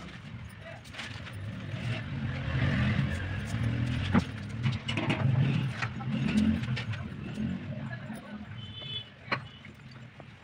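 A low, engine-like rumble from a passing motor vehicle, swelling over a few seconds and then fading, with voices in the background and a few small clicks.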